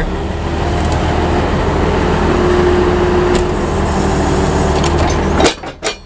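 Heavy truck engine idling steadily, with a faint steady whine in the middle and a couple of sharp metallic knocks near the end.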